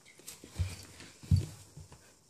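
Pembroke Welsh Corgi puppy's shoe-clad paws knocking on a wooden floor as it squirms on its back: two dull thumps, about half a second in and just over a second in, the second the louder, with a few lighter taps.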